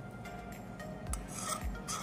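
Steel spoon scraping soot (lampblack) off the inside of a steel bowl, a soft rasping rub as the freshly made kajal is gathered up.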